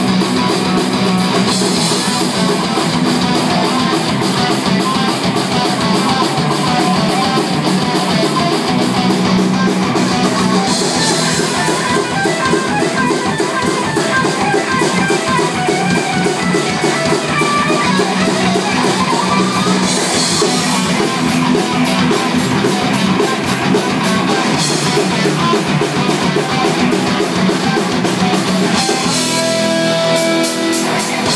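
Live rock band playing loud: electric guitars and a drum kit in an instrumental passage with a fast, steady beat and cymbal crashes at intervals.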